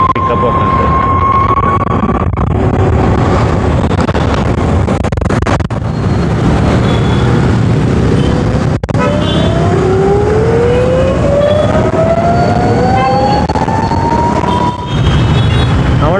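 Ather 450 electric scooter riding in city traffic: steady loud wind and road noise, with the electric motor's thin whine rising in pitch as the scooter accelerates, briefly at the start and again over about five seconds in the second half.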